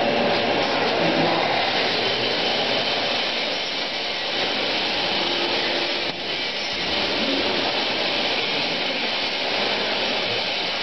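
Flour-coating peanut roaster machine running, with a steady, loud rushing noise.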